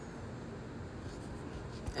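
Quiet room tone with a faint, steady rustle and no distinct knocks or clicks.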